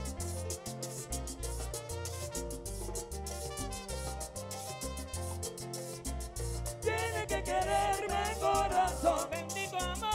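Live Latin dance orchestra playing over a steady bass and percussion beat. A trumpet section comes in louder about seven seconds in.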